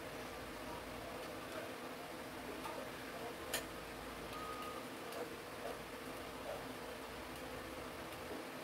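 Quiet room with a steady low hum and a few faint clicks as a heated flat iron is handled in the hair, the sharpest click about three and a half seconds in.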